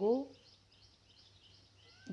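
A spoken word ends just after the start, then a quiet pause with faint, scattered bird chirps in the background and a low steady hum.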